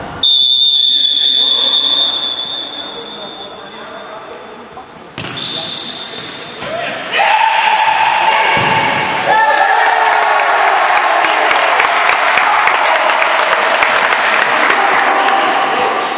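A referee's whistle blows one long steady blast just after the start. About seven seconds in, spectators begin shouting and cheering loudly, with clapping, and this keeps on to the end.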